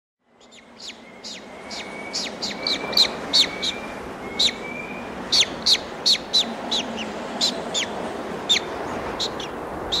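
White-tailed eagle chick calling: a run of thin, high, sharp calls, each sweeping quickly down in pitch, about two a second, over a steady background hiss. The sound fades in over the first second.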